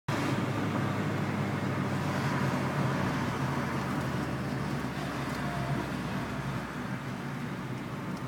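Road and engine noise inside a moving car's cabin: a steady rumble that eases slightly toward the end.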